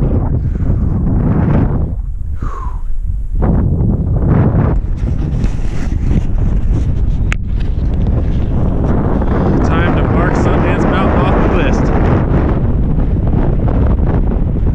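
Wind buffeting the microphone on an exposed mountain summit: a loud, steady low rumble that eases briefly a couple of seconds in.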